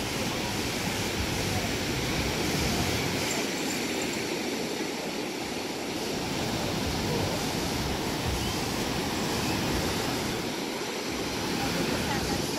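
Pacific surf breaking and washing up a sandy beach: a steady rush of surf that gently swells and eases.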